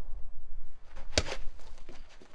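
A single sharp knock about a second in, over a faint low rumble.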